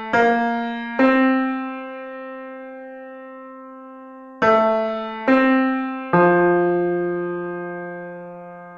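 Piano notes played one at a time in a slow melody within a dubstep track, five in all, each left to ring and fade slowly. The last note is the lowest.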